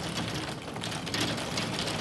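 Heavy rain pelting down in a dense, steady patter.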